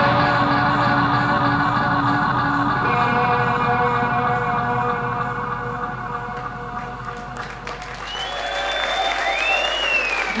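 Live band's final sustained chords ringing out and fading away, then audience applause and a whistle starting about eight seconds in.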